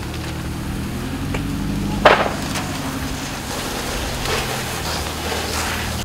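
Junked cars burning in a large fire: crackling and popping over a steady low drone, with one loud sharp pop about two seconds in, the kind of bang of tires bursting in the heat.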